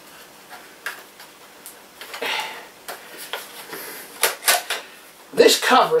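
Scattered sharp plastic clicks and knocks as a laptop's bottom access cover is fitted and pressed against its plastic case; the cover will not stay on without its screws. A short spoken word near the end.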